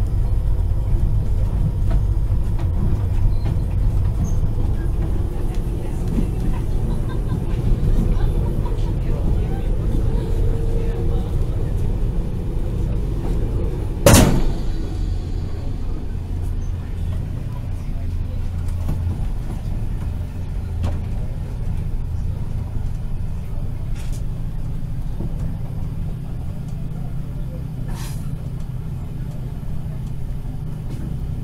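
HŽ 6111 electric multiple unit, built by Ganz MÁVAG, running along the track, heard from inside the carriage as a steady low rumble. A single sharp, loud knock comes about fourteen seconds in, and a few faint clicks follow later.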